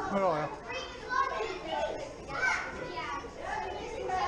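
Children's voices calling out and chattering over one another, with other people talking, the voices overlapping throughout.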